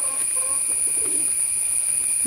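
Faint bird cooing, a few short calls in the first second, over a steady high-pitched drone.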